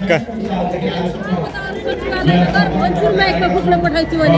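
Voices talking close by over crowd chatter, with several people speaking at once.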